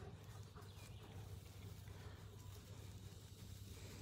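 Near silence: background tone with a faint steady low hum.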